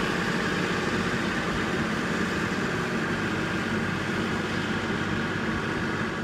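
A steady engine hum, even in pitch and level throughout, with no change as it goes on.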